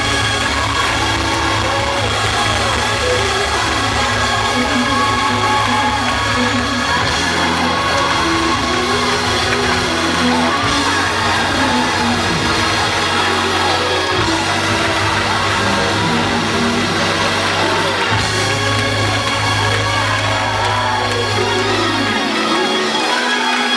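Live gospel choir and soloist singing over instrumental accompaniment with sustained bass notes, with hand clapping and shouts from the congregation.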